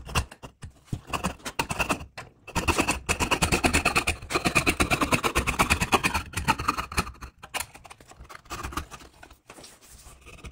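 Coping saw cutting through a pine board in a rapid run of rasping strokes, the footage sped up so the strokes come very fast. Loudest through the middle, with a short break near two seconds, and lighter, sparser strokes after about seven seconds.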